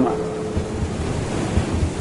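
Steady rushing ocean ambience with an uneven low rumble underneath.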